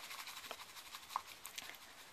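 Bamboo tea whisk (chasen) beating heated milk in a bowl to froth it: a faint, fast, even brushing swish, with a light tick or two.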